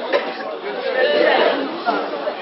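Indistinct chatter: several people talking over one another, with no single clear voice.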